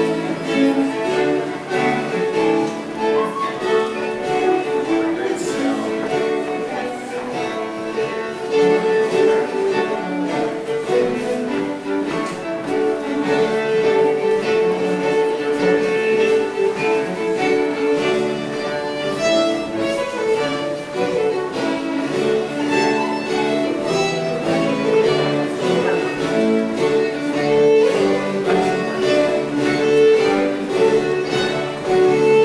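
Live early-music ensemble of violin, recorders, viola da gamba and harpsichord playing an English country dance tune from 1718, a steady violin-led melody without a break.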